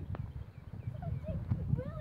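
Wind buffeting the microphone in uneven gusts, with a few short rising-and-falling calls in the second half.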